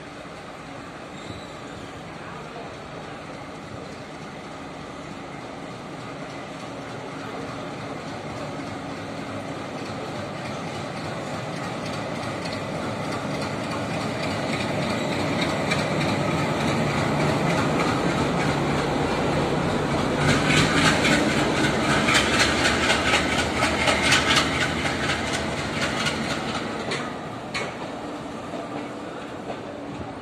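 A passenger train drawn by a diesel locomotive comes slowly into a station. The engine's drone and the rolling noise grow steadily louder over about twenty seconds. From about two-thirds of the way through, the coach wheels clack rapidly over the rail joints for several seconds as the coaches pass, then the sound eases toward the end.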